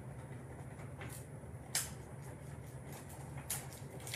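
A small stick rubbing a rub-on transfer onto a plastic egg, a faint scratchy scrubbing with a few soft scrapes, over a low steady hum.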